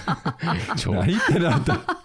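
People talking amid chuckling laughter.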